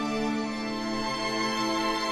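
Background music of long held notes, with the chord changing about half a second in.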